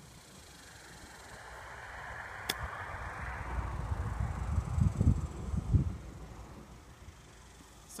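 A golf club chipping a ball out of heavy rough: one sharp click about two and a half seconds in. Around it, wind rushes and buffets the microphone in low gusts that are loudest around the middle.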